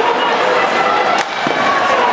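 Loud, dense arena din during play in an ice hockey game, with a single sharp crack a little past a second in.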